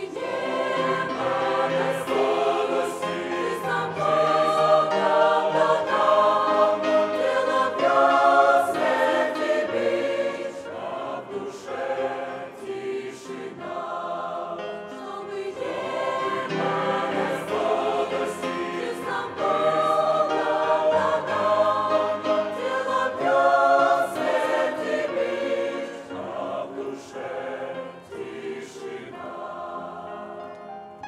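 Mixed church choir of men's and women's voices singing a hymn in Russian, full and sustained, growing softer toward the end.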